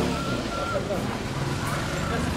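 Open-air market ambience: people talking in the background, with a motor vehicle engine humming low from about midway.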